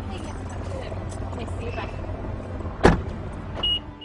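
A car door is slammed shut about three seconds in, the loudest sound, over a steady low rumble. A short high beep follows just after.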